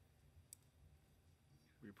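Near silence: room tone, with one faint short click about half a second in, and a voice starting to speak at the very end.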